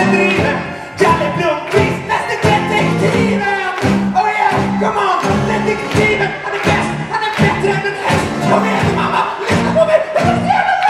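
A man singing a song into a handheld microphone over a live pop band of keyboard, guitar, bass and drums, with a steady, even beat.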